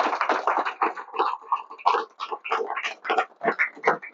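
Audience applauding: dense clapping at first that thins out into irregular, scattered claps.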